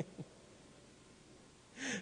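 Near silence: room tone in a pause of a man's speech, his last word trailing off at the start. Just before the end comes a short, sharp intake of breath through the microphone.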